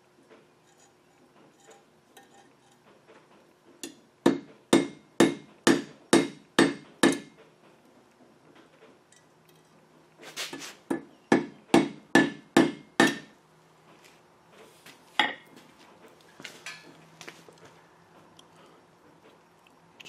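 Hand hammer striking hot steel on an anvil, nipping off the fingertips of a forged hand. The blows come in two runs of about seven, roughly two a second, each ringing from the anvil. A single blow and a few light taps follow later.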